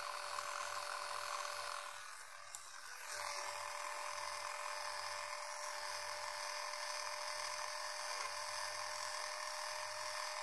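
Electric facial cleansing brush with a bristle brush head buzzing steadily against the skin. It is briefly quieter about two seconds in, with a single small click, then buzzes on as before.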